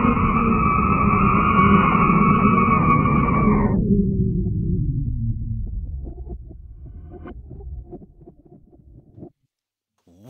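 Sonification of Hubble's Helix Nebula image played in reverse, with colour mapped to pitch and brightness to loudness. It is a dense drone of two high, steady tones over a low rumble. The high tones cut off suddenly about four seconds in, and the rumble then fades out, going silent shortly before the end.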